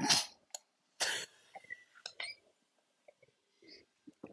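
A man's breath and mouth sounds while tasting beer: two short, cough-like noisy bursts about a second apart, then faint lip smacks and mouth clicks.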